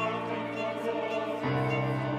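Mixed choir singing sustained chords with violin accompaniment; the harmony shifts, with a new low note, about one and a half seconds in.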